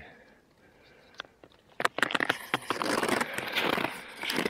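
Near silence for about the first two seconds, then snowshoes crunching and scraping through snow in a dense run of crackling, clicking steps.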